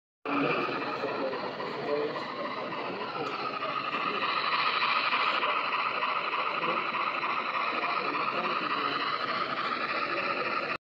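Model steam locomotive and passenger cars running past on layout track: a steady rolling noise of the motor and wheels on the rails, with people talking in the background. It starts abruptly about a quarter second in.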